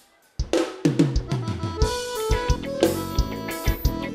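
A live forró band starts playing about half a second in, after a brief near-silent pause: drum kit keeping a steady beat with bass-drum hits, electric bass, and sustained accordion notes.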